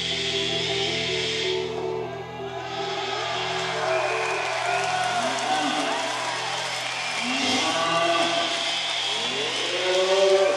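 The closing drone of a live rock band's song, with held low notes, fading about halfway through. Long rising-and-falling wailing calls come in over it.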